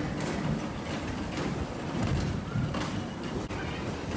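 Bumper car running across the ride's metal floor: a steady low rumble from its motor and wheels, with a few short knocks.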